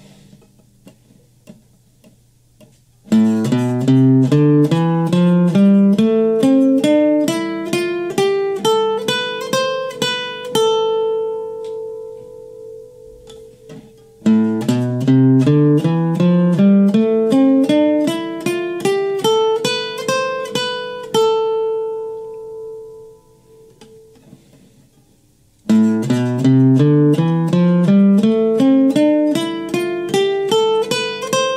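Nylon-string acoustic guitar playing the natural minor scale box pattern at the fifth fret as single picked notes. Each run climbs steadily from low to high and ends on a held top note that rings out and fades. The run is played three times, with a short pause after each ring-out.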